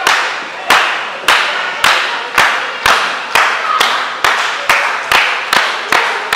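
Steady rhythmic clapping, a little over two claps a second, echoing in a large hall.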